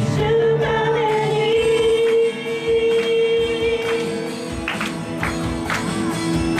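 A live praise-and-worship band playing: a woman sings lead into a microphone over electric guitars, keyboard and drums. A single note is held for about four seconds, then drum hits come in near the end.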